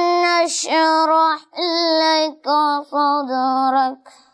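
A boy's voice chanting Quran recitation in long, melodic held notes, in several phrases with short breaths between them; the recitation stops right at the end.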